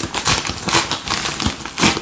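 A padded Jiffy mailer bag crinkling and rustling as it is handled, in irregular crackles with a sharper crinkle near the end.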